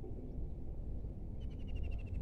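A steady low rumble of wind on the microphone. Over it, from a little past the middle, a small animal gives a rapid trill of about a dozen high notes that falls slightly in pitch.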